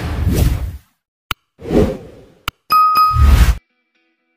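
Editing sound effects from a logo intro: a loud noisy sting fades out, two sharp clicks and a short thud follow, then a TV-static glitch burst with a steady high beep that cuts off sharply, leading into a 'no signal' screen.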